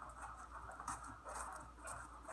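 An Australian Shepherd panting faintly, with soft steps on foam floor mats as dog and handler walk.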